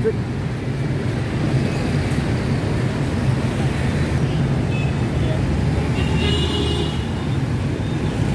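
City street traffic, mostly motorbikes and some cars, running and passing by in a steady low engine hum.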